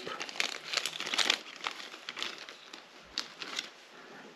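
Small clear plastic parts bag crinkling in the hands as a black plastic belt-clip plate is worked out of it, with irregular light clicks; busiest in the first second and a half, then fainter and sparser.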